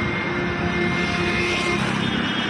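An engine running steadily, a low hum with a few faint steady whining tones held over it.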